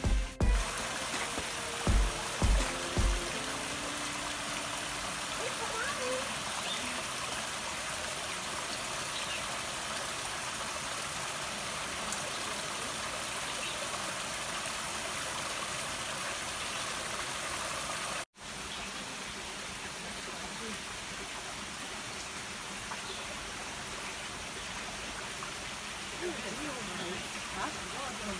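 Small rocky forest stream running and trickling over stones: a steady rush of water that drops out briefly about eighteen seconds in and comes back a little quieter. Near the start there are three low thumps and the tail of some music.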